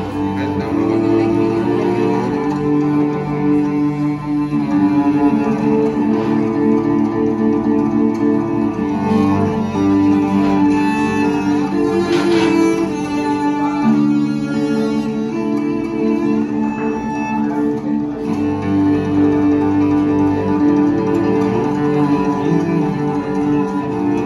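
Cello and Russian guitar playing an instrumental passage together: long bowed cello notes under plucked guitar notes, the held notes changing every few seconds.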